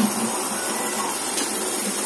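Steady hiss of a lit gas stove burner under a cooking pot.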